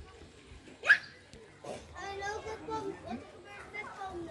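Children's voices at a playground, with one short, sharp high-pitched cry about a second in, then chatter.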